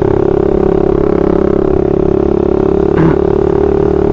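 Suzuki Satria FU 150 cc single-cylinder four-stroke engine running under way at steady revs, a constant buzzing drone that keeps one pitch throughout.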